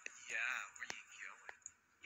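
Quiet speech: a voice says "yeah", followed by soft, low talk. Two short clicks come about a second and a second and a half in.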